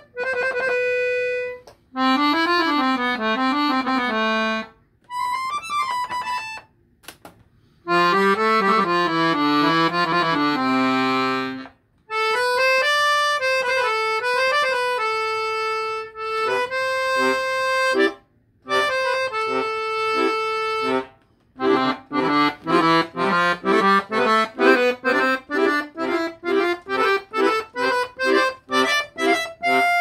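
Salanti Italian piano accordion with hand-made reeds on two reed sets, played in short melodic phrases and held chords separated by brief pauses. It ends in a quick run of short, detached chords.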